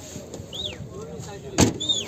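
The tailgate of a Chevrolet Spark hatchback is shut with a single sharp thump about one and a half seconds in, over faint background voices.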